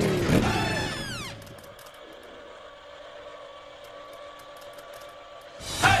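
A soundtrack effect of a falling pitch glide, like something zooming away, in the first second or so, followed by a quiet steady drone with a few faint held tones. Near the end a shouted 'hey' and upbeat music come in.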